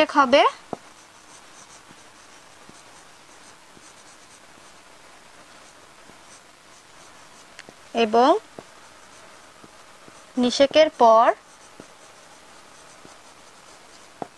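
Felt-tip marker writing on a whiteboard: a quiet, steady scratching with small ticks as the strokes are made. A woman's voice cuts in briefly three times.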